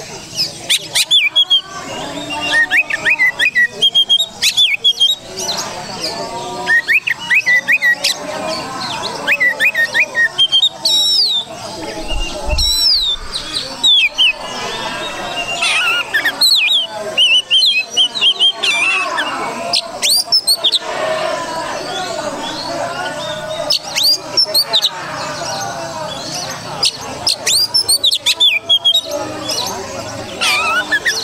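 Oriental magpie-robin (kacer) singing a long, varied song of sharp chirps, whistled upslurs and harsher notes, delivered in repeated bursts with brief pauses.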